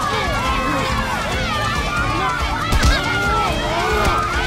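A group of boys shouting and yelling over one another during a brawl, with a single thud about three seconds in.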